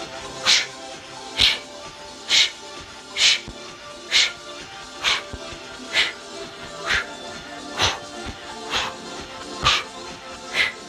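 A sharp, breathy exhale about once a second, in rhythm with fast jumping jacks, over steady background music, with faint soft thuds of bare feet landing on carpet.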